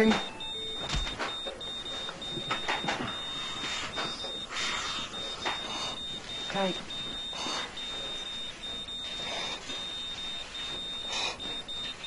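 High-pitched electronic alarm beeping steadily from a cardiac monitor, sounding for a patient still in ventricular fibrillation during CPR.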